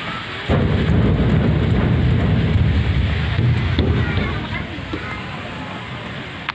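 Low rumbling noise on the phone's microphone. It starts suddenly about half a second in, runs for about four seconds and then fades.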